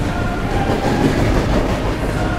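Passenger train running along the track, with a loud, steady rumble of wheels on rails heard from beside the moving coaches.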